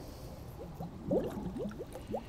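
Air bubbling out of a flexible hose as it is pushed under pond water: a run of quick rising bubble plops and gurgles, starting about half a second in. It is the sound of the hose filling with water to prime a siphon.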